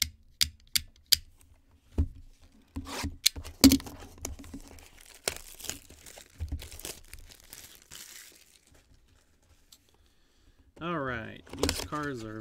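Plastic shrink wrap being torn and crinkled off a cardboard trading-card box, starting a few seconds in after several sharp clicks from handling the box. A voice starts near the end.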